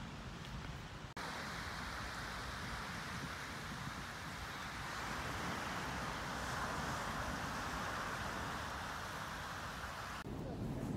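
Small waves washing onto the shore as a steady hiss of surf, which comes in suddenly about a second in. Before that, wind rumbles on the microphone.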